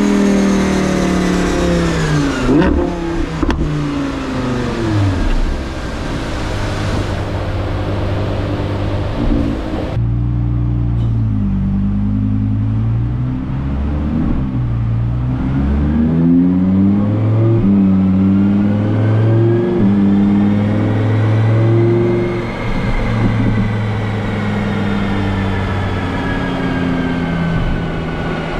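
Audi R8 V10 Plus's 5.2-litre V10 running on a rolling road through a factory Audi sports exhaust. The engine comes down off high revs near the start, then climbs and falls in pitch several times, with one long slow rise and fall in the second half. A loud rushing noise runs under the engine for the first ten seconds and cuts off suddenly.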